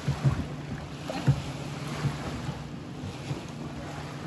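Wind buffeting the microphone over small waves lapping at a shallow stony shore, with two dull knocks, one just after the start and one about a second later.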